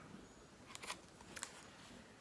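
Crisp paper rustles from the pages of a hardback book being handled and turned: a quick double rustle just under a second in and another short one about half a second later, over quiet room tone.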